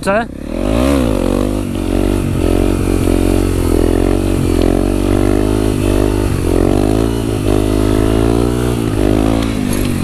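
Honda CRF250 supermoto's single-cylinder four-stroke engine through a Yoshimura exhaust, revving up sharply in the first second as the front wheel comes up into a wheelie. It is then held on the throttle for balance, its pitch rising and dipping repeatedly, with wind rushing past.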